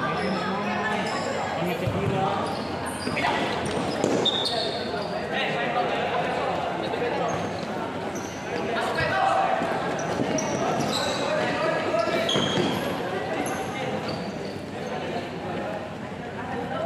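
Futsal game in an echoing indoor hall: the ball is kicked and bounces on the court a few times, over players and onlookers calling out and many short high-pitched squeaks.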